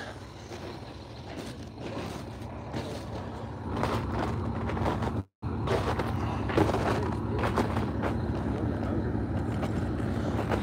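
Diesel truck engine idling with a steady low rumble. The sound cuts out for a split second about five seconds in.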